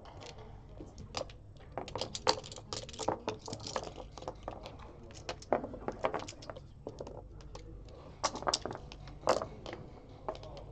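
Backgammon checkers clicking and clattering as both players pick them up and set them back out on the board for a new game. There is a run of quick clicks, with several louder clacks as checkers are put down, the sharpest about nine seconds in.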